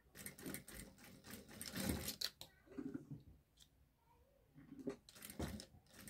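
Domestic sewing machine stitching in short runs, with a quieter gap of about two seconds in the middle before it starts again.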